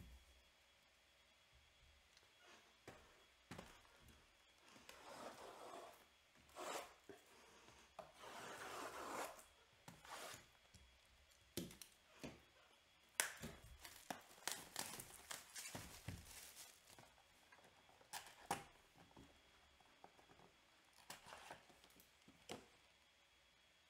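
Plastic wrap being torn and crinkled off a cardboard box of trading-card packs, in two longer tearing stretches. Then the cardboard box is opened and handled, with a series of sharp taps and knocks.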